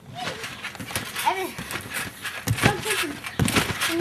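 Children's voices, short wordless calls and vocal sounds rising and falling in pitch, with a few sharp thumps about halfway through and near the end.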